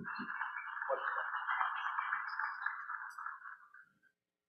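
Audience applauding, sounding thin as if through a narrow audio feed, and fading out near the end.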